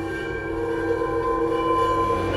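Intro sound design for an animated logo: a sustained chord of several steady tones over a low rumble, swelling slowly in loudness.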